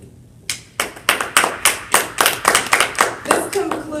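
Brief applause from a small group of people, with distinct hand claps at about five a second, starting half a second in and dying away near the end.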